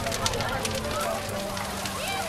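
Large bonfire of piled brushwood and branches burning hard, with frequent sharp crackles and pops. The voices of a crowd talking sound under it.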